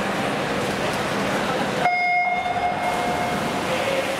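Electronic start signal for a swimming race: a single steady beep of about a second, about two seconds in. Before it comes the murmur of a crowd in a large, echoing pool hall.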